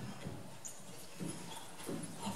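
A few soft footsteps on a stage floor, evenly spaced at about one every half second or a little more.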